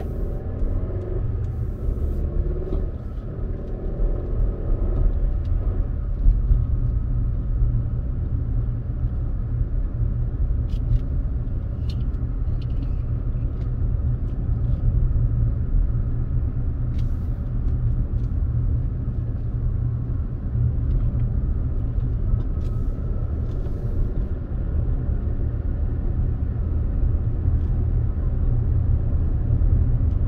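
Toyota RAV4 driving, heard from inside the cabin: a steady low rumble of engine and road noise, with a few faint clicks along the way.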